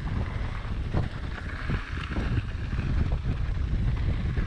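Wind buffeting the microphone over a mountain bike's tyres rolling on a dirt and gravel trail at speed, with a few short knocks and rattles as the bike goes over bumps.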